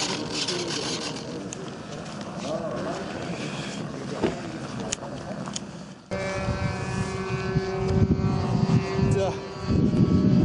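Background voices and wind for the first six seconds. Then the delta wing's 70mm 10-blade electric ducted fan runs at power as the model is held aloft for a hand launch: a steady whine over heavy air rush and wind on the microphone, dipping briefly near the end.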